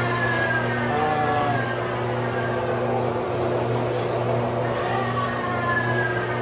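Electric motor and gear drive of an animated diorama running, rocking a lever that swings a stone ball over a figure: a steady hum with a whine that falls slowly in pitch near the start and again near the end.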